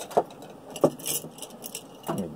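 A few short, sharp clicks and light taps, spaced irregularly over two seconds: handling noise from the phone and sketchbook being held.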